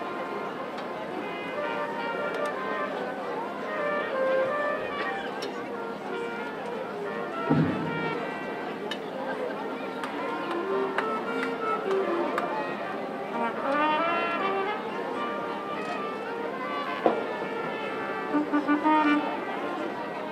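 Brass instruments of a marching band sounding scattered, overlapping held notes and short runs without a common beat, as in a warm-up, over a background of voices.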